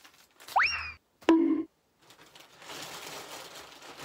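Two cartoon-style sound effects: a quick rising slide-whistle-like 'boing', then a sudden tone that drops and holds low, each cut off short. A soft rustling noise follows near the end.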